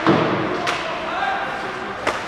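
Sharp knocks from ice hockey play echoing around the rink: a loud one at the start and a lighter one under a second later, with voices calling out.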